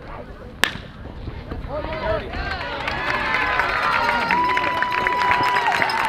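Metal baseball bat hitting a pitched ball with one sharp crack, followed by spectators shouting and cheering that builds over the next few seconds, one voice holding a long call near the end.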